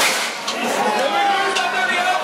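A confetti cannon fires from a carnival float: one sudden sharp blast with a rush of air at the start, then two smaller sharp cracks about half a second and a second and a half in. Voices talk throughout.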